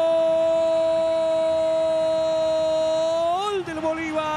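Football commentator's drawn-out Spanish "goool" cry: a man's voice held on one steady high note for more than three seconds, wavering briefly near the end as the shout trails off.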